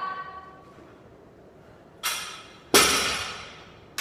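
A 65-pound barbell with black plates set down on the floor: two sudden impacts about three-quarters of a second apart, the second louder, each followed by metallic ringing that slowly dies away.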